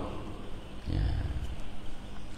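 A pause in a man's speech: one brief, low murmured "ya" about a second in, over faint steady background noise.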